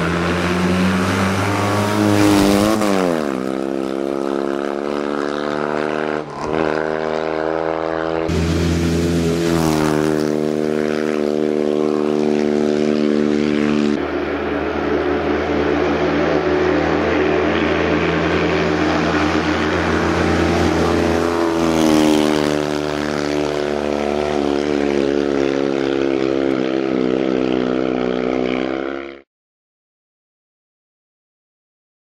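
Fiat 126p rally car's air-cooled two-cylinder engine driven hard, revving loudly with its pitch falling and climbing again a few times as the driver shifts and lifts. The sound cuts off suddenly near the end.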